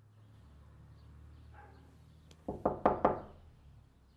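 Knocking on a door: about four quick raps, about two and a half seconds in, over a faint low hum.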